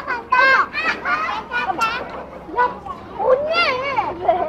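Young children talking and calling out at play, their high-pitched voices in quick, broken phrases.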